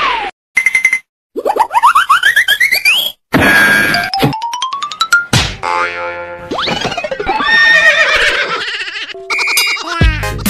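Cartoon-style sound effects: springy boings and rising whistle-like glides in short bursts with brief silences, then a sharp hit a little past five seconds in. After the hit comes a short stretch of music.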